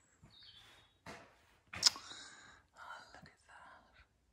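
Soft breathy vocal sounds from a person, like whispering or sighing, in short bursts with a sharp click just under two seconds in.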